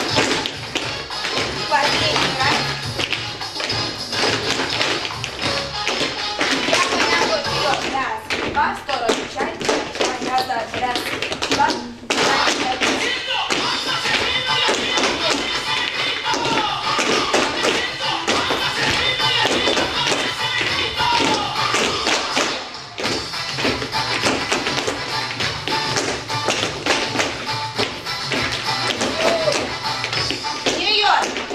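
Latin-style dance music playing, with many dancers' shoes tapping and stamping on a hard floor in time to it.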